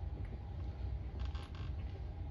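Quiet room noise: a steady low rumble, with a brief rustle a little over a second in. The piano is not yet being played.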